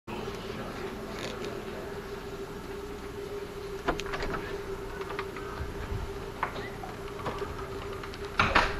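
A steady hum with a faint background hiss, broken by a few soft clicks and knocks about four seconds in and again near the end.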